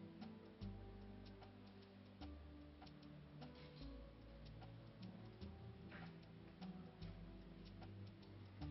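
Quiet background film score: sustained low bass notes that shift every second or two under a light ticking beat.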